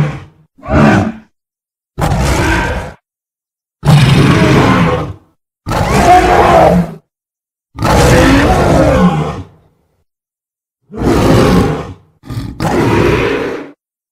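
A string of separate giant-ape monster roars and grunts, film creature sound effects of the King Kong kind, about eight calls of half a second to a second and a half each with clean silence between them.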